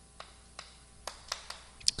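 A few faint, scattered clicks and taps in a quiet pause.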